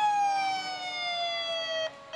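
Emergency vehicle siren sounding one slow, falling wail that cuts off suddenly near the end.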